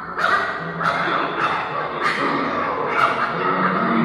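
Two cartoon dogs barking at each other in an animation's soundtrack, repeated barks coming irregularly about every half second to second, with music underneath, played through loudspeakers in a room.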